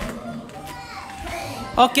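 Children's voices and chatter with music in the background; a voice says a loud "okay" near the end.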